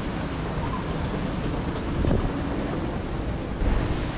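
Steady hiss of light rain and drizzle around a walking group of people, with a low bump near the end.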